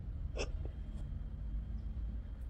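One short, clipped voice-like blip about half a second in, over a faint low rumble.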